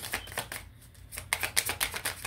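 Tarot cards being shuffled by hand: quick runs of crisp papery clicks, one at the start and another about a second and a half in.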